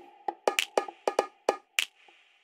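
Outro music: a quick rhythm of sharp, woody percussive clicks with short pitched notes, about four or five hits a second.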